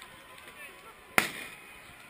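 A single sharp, loud bang a little over a second in, trailing off briefly, over the murmur of a large outdoor crowd.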